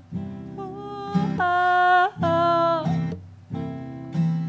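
Acoustic guitar strummed under a woman's voice singing a few long, wordless held notes, stepping up in pitch, with short breaks between them.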